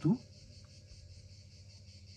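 Faint, steady chirring of insects with a fast, even pulse, under a low steady hum. The last syllable of a spoken word cuts off at the very start.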